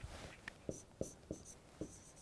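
Faint writing on a board: a handful of short taps and strokes as symbols are written.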